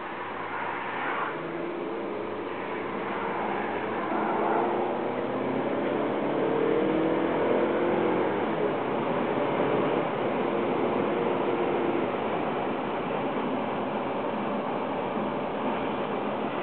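Steady road and engine noise heard from inside a moving car, an even rush with a faint hum through the middle of the stretch.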